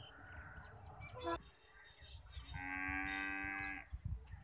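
A cow mooing once, one steady call about a second and a half long that starts past the middle, preceded about a second in by a short rising chirp. Low rumble on the microphone runs underneath.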